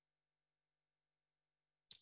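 Near silence on a video-call recording, with only a faint hum; a voice starts again right at the end.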